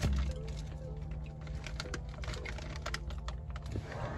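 Quick, irregular crackles and clicks from a foil bag of tortilla chips being handled and chips being crunched, over a steady low hum.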